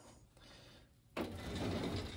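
A steel parts-cabinet drawer loaded with hardware sliding in on its runners, starting suddenly about a second in after near silence.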